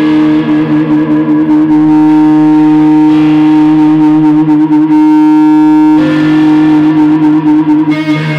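Electric guitar feedback: a loud, held, droning tone that wavers slightly, with a lower tone beneath it. The upper tones change suddenly about five seconds in and again a second later as the guitar is moved and handled.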